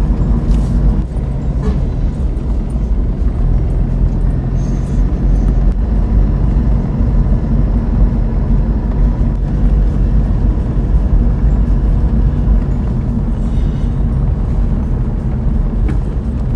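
Car engine and tyre noise heard from inside the cabin while driving on a paved road: a steady low rumble with a faint hum.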